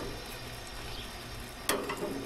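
A metal spatula scraping under and flipping grilled cheese sandwiches on a gas grill's wire grate, over a steady sizzling hiss from the grill; one sharp metallic clack near the end as the spatula strikes the grate.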